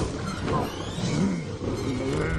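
Animated boar-like monster with tusks, vocalising in a series of short low calls, each rising and falling in pitch.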